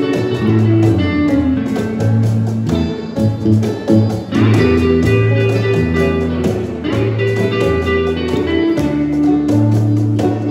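Live blues band playing an instrumental passage with no singing: electric guitars, banjo and electric bass over a cajon beat.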